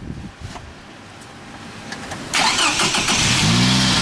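A car engine cranks and starts a little over two seconds in, its revs flaring up near the end, with wind buffeting the microphone.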